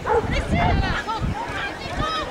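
A dog barking several times in short calls, mixed with voices.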